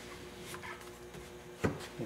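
Quiet room with a faint steady hum, and one short knock about a second and a half in as a handheld fabric-covering iron is brought down onto the fabric-covered panel.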